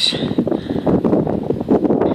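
Rain and wind buffeting a phone's microphone: a dense, crackling rumble that rises and falls throughout.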